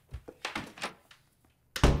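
A soft thump, a few light knocks, then a loud thunk close to the end, from the film's soundtrack.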